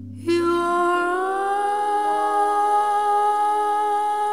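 Jazz ballad music: a female vocalist holds one long note, which starts sharply just after the beginning and bends slightly upward about a second in.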